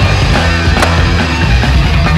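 Fast hardcore punk song with distorted electric guitar, bass and drums, at full volume.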